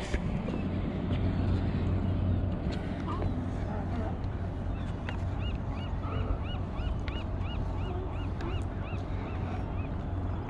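A gull calling: an evenly spaced run of short high rising-and-falling calls, about three a second, starting about halfway through and lasting some four seconds. Under it is a steady low rumble.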